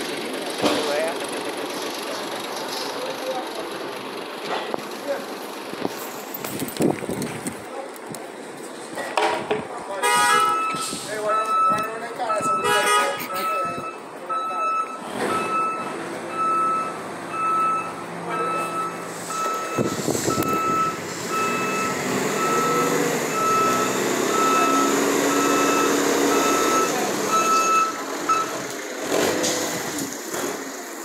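Forklift reversing alarm beeping, one high beep about every second, starting about ten seconds in and stopping shortly before the end, over steady yard noise.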